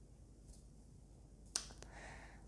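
Near silence, broken about one and a half seconds in by a single short, sharp click, followed by two faint ticks.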